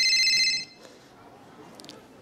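Telephone ring, a high trilling tone with several pitches, that cuts off suddenly a little over half a second in.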